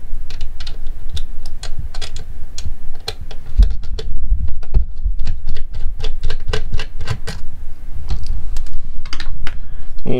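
Small Phillips screwdriver turning a screw out of a metal antenna bracket: a run of irregular light clicks, several a second, over a low rumble.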